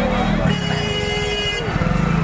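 A vehicle horn sounds once as a steady held note for about a second, over the chatter of a dense street crowd.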